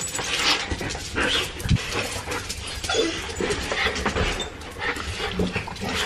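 Excited dogs whining and yipping in short, irregular bursts.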